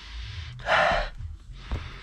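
A man sniffing the leather seat up close to smell the freshly applied leather quick detailer: one sharp inhale through the nose about half a second in, with softer breathing around it.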